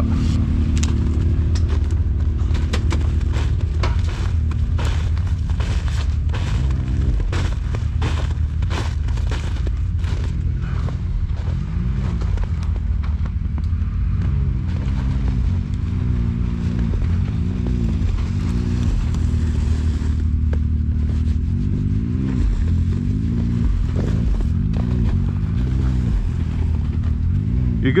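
Side-by-side UTV engine idling steadily, then revved in short repeated blips, each rising and falling in pitch, through the second half as the machine is inched between trees. A run of sharp snaps and crackles over the engine in the first half.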